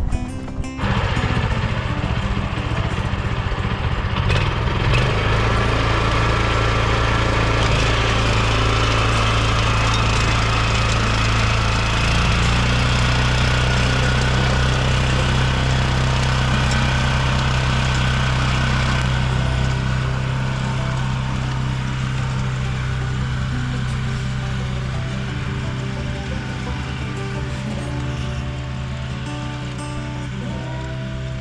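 Small walk-behind cultivator's engine running steadily under load as its rotary tines till the soil, starting about a second in and growing quieter over the last third.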